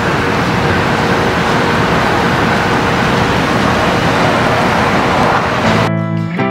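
Steady, loud outdoor traffic noise: a continuous rush of road vehicles with no single vehicle standing out.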